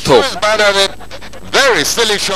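Speech: a news narration in Bengali, with a short break in the middle.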